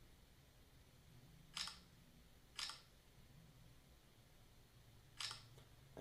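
Three short smartphone camera shutter clicks: two a second apart, then a third about two and a half seconds later, against near silence.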